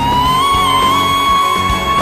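A male singer slides up into a very high note and holds it steadily, with band accompaniment and drums underneath, in a pop-opera performance.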